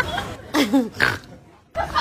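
A short vocal sound with a wavering pitch about half a second in, followed by a brief hush before voices start again near the end.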